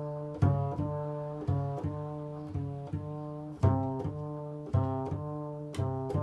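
Solo double bass played pizzicato: single low plucked notes, about two a second, in a slow improvised line, each sharp attack ringing on and fading until the next note.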